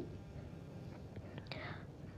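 A quiet pause: faint room noise with a couple of light ticks and a soft whispered breath from a person about one and a half seconds in.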